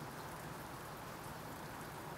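Faint, steady hiss of outdoor background ambience, even and without distinct events, of the kind a tagger hears as light rain.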